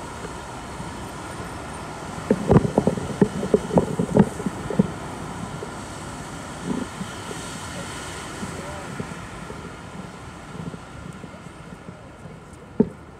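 Busy city street ambience: a steady hum of distant traffic and crowd, with passers-by talking. A run of loud, short close-up sounds comes between about two and five seconds in.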